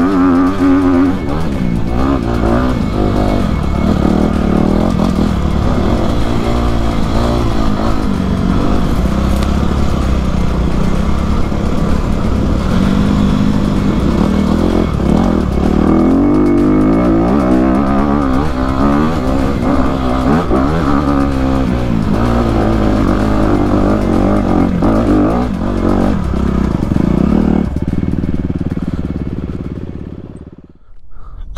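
Honda CRF250RX four-stroke single-cylinder dirt bike engine running under load on a trail ride, its revs rising and falling with throttle and gear changes. The sound fades out near the end.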